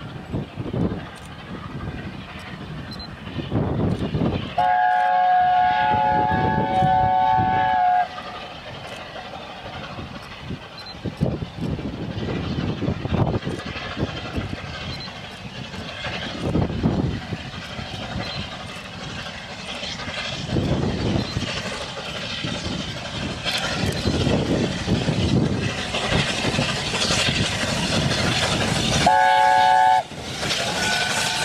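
Steam chime whistle of an LNER A4 Pacific at the head of a double-headed train: a held chord of several notes for about three seconds, about five seconds in, and again just before the end. Between the whistles, the steam locomotive exhaust works towards the microphone, growing louder as the train nears.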